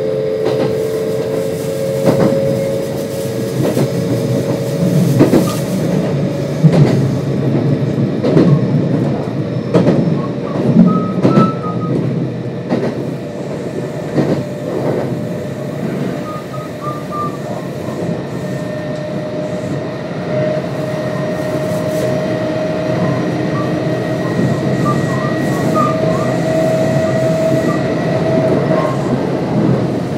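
Kintetsu 1026 series electric train with Hitachi GTO-VVVF traction running at speed, heard from inside the car: a steady rumble with the inverter/motor hum, in which one tone climbs slowly in pitch in the second half. Through the first half the wheels click over rail joints many times.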